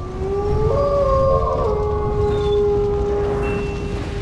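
Wolf-howl sound effect: several long, overlapping howls that slide up at the start and then hold steady, over a low rumble.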